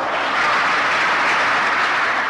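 Audience applauding steadily in response to a recited line of poetry.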